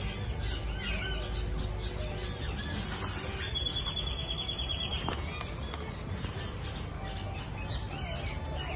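Wild birds chirping and calling, with a rapid trill lasting about a second and a half midway through, over a low rumble.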